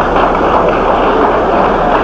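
Audience applauding: many hands clapping in a steady, dense patter.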